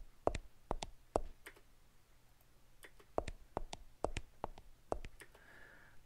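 Footstep sound effect played back with its tempo changed, which alters both the strike of each foot and the space between steps. There is a quick group of sharp strikes in the first second or so, a pause, then another run of steps from about three seconds in.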